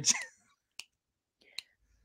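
A man's spoken word trailing off, then a quiet pause broken by two faint short clicks.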